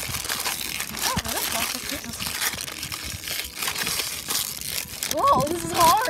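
Foil blind-bag packaging crinkling as hands squeeze and tug at it, the bag not giving way. A short voice, like a laugh, comes in near the end.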